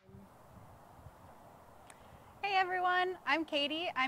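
Faint open-air background hiss with a small click, then, about two and a half seconds in, a woman's voice starts speaking in a raised, drawn-out greeting tone.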